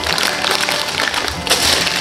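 Background music, with the rustle and light clicks of plastic packaging and fittings being handled.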